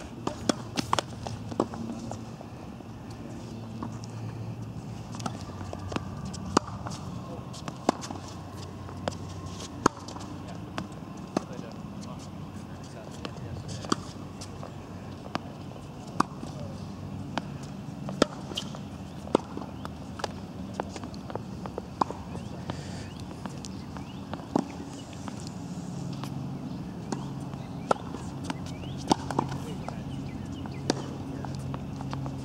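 Tennis ball being hit back and forth on a hard court: sharp pops of racket strings striking the ball and the ball bouncing, about one every second or two.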